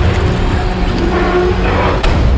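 Film-trailer score and sound design: a loud, dense low rumble with a few held tones, continuous and with no speech.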